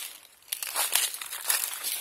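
Footsteps crunching on dry fallen leaves, a run of irregular crinkling steps starting about half a second in.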